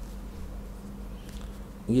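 A steady low electrical hum on the microphone line, heard during a pause in speech. A man's voice starts right at the end.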